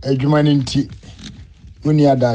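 A person's voice: a stretch of speech or drawn-out vocal sound in the first moments, a quieter pause, then the voice again near the end.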